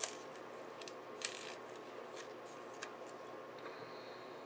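Sticker paper being handled: a few short, crisp rustles and ticks as planner stickers are peeled and pressed onto a paper planner insert, the longest about a second in.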